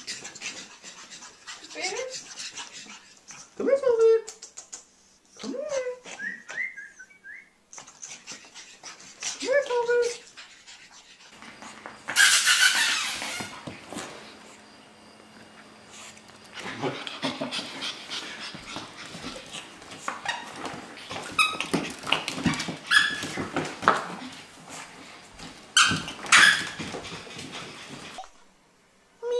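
Pug dogs giving short, high whining yips that rise and fall in pitch, then a loud scuffle. After that come many sharp clicks and scrabbling as a pug puppy plays with a plush toy on a hardwood floor.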